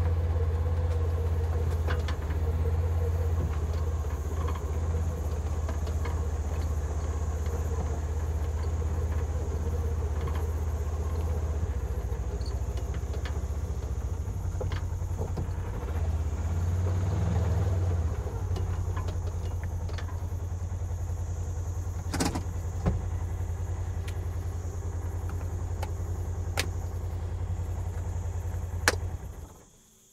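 Vehicle engine running, heard from inside the cab as a loud, steady low hum whose note shifts a few times, with a few sharp knocks or rattles. The sound cuts off suddenly just before the end.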